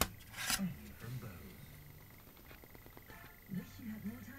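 Handling noise from moving a graphics card about while filming: a brief rustle about half a second in, then a few faint clicks. Faint low murmuring and a steady thin whine sit underneath.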